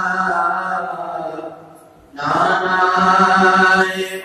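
A man chanting a manqabat in long drawn-out notes, breaking off briefly about two seconds in before starting the next held note.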